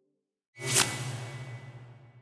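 Whoosh sound effect starting about half a second in, swelling fast to a sharp peak and then fading over about a second, with a low hum and a thin high tone trailing under it.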